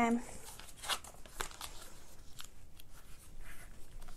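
Sheet of A4 paper being folded and creased by hand into tight concertina pleats: soft rustling with a few sharp crackles of the crease being pressed, the clearest about a second in.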